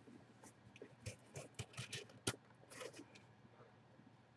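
Faint, scattered clicks and light scrapes of small objects being handled, with one sharper click a little over two seconds in.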